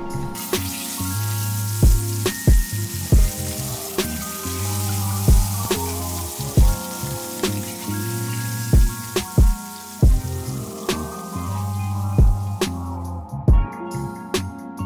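Background music with a steady beat and bass, over the steady sizzle of scallops searing in a hot pan. The sizzle stops shortly before the end while the music goes on.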